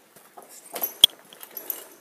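Caving rope gear being worked: small metallic clicks and rustling of carabiners and a rope ascender on the rope, with one sharp metal click about a second in.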